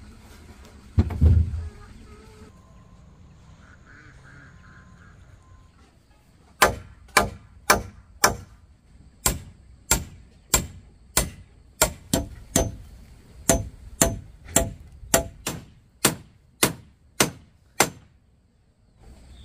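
A tool striking hard over and over, about two blows a second, each blow with a short metallic ring, starting about six seconds in. A dull thump comes about a second in.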